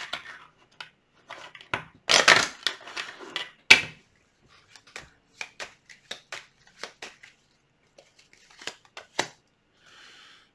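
Tarot cards being shuffled and handled: a few longer rustling bursts of shuffling, then a run of short card snaps and taps.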